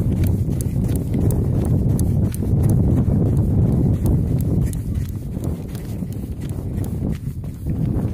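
Wind buffeting the microphone: a loud, steady low rumble, with many faint irregular clicks and ticks over it.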